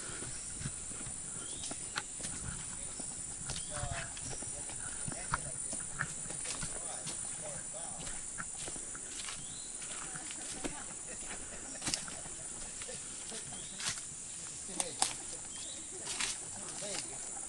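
Rainforest ambience: a steady high-pitched insect chorus, with footsteps and scattered clicks and snaps on a muddy, leaf-littered trail, and a few short animal chirps.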